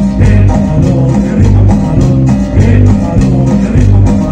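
Latin dance band playing live, with a bass line, guitar and percussion keeping a steady dance beat.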